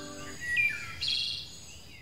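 Recorded birdsong: bursts of high warbling twice, about a second apart, with a downward-sliding chirp between them. A held musical chord cuts off shortly after the start.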